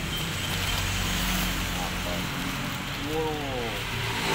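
Rustling of a kraft paper envelope being opened and a plastic-wrapped packet drawn out of it, over a steady low hum like an idling engine; a short voice sounds about three seconds in.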